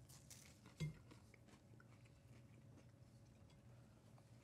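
Faint chewing and crunching of crackers topped with sardines in olive oil, with a short voiced 'a' about a second in.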